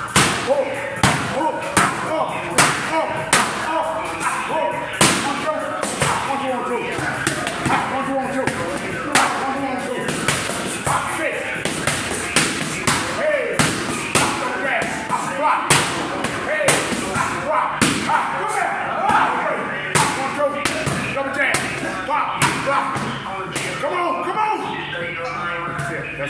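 Boxing gloves striking focus mitts, sharp slaps coming in quick irregular combinations, with voices and music in the background.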